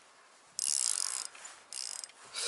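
Baitcasting reel whirring as line runs off the spool during a cast: a loud, high-pitched rush lasting under a second, then a shorter one near the end.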